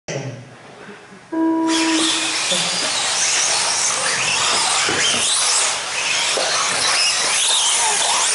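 A short electronic start tone sounds about a second in. A pack of 4WD RC buggies then launches and races, their motors whining up and down in pitch over the rush of tyres on the dirt track.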